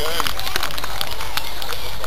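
Steady crackling hiss dotted with many small clicks, with faint voices.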